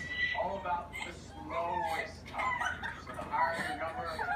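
A child laughing and squealing in short, high vocal bursts.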